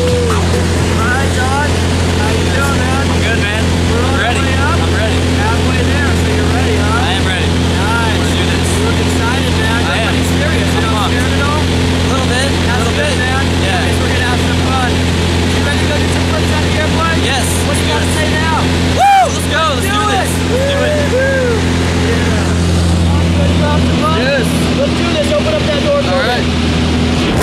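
Small single-engine propeller plane's engine drone heard inside the cabin during the climb, loud and steady at one pitch, with voices partly heard under it. The drone breaks off briefly once, a little past two-thirds through.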